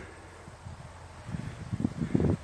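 Low rumble of wind on the microphone.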